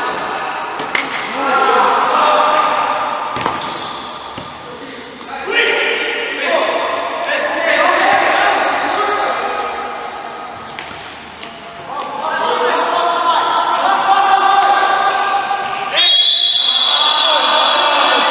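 Indoor futsal play in an echoing hall: ball kicks and bounces, shoe squeaks and shouting voices. About sixteen seconds in, a referee's whistle blows one long blast, stopping play.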